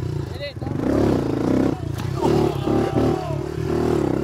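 An engine running steadily, with indistinct voices over it.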